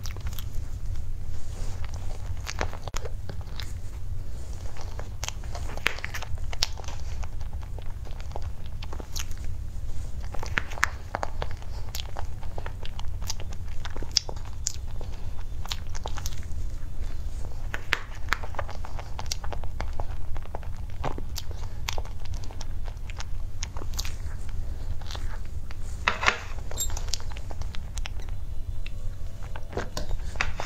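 Close-miked eating of a soft cream mousse cake: irregular small mouth clicks and chewing sounds, with a metal spoon against its plastic box, over a steady low hum. A denser run of clicks comes a few seconds before the end.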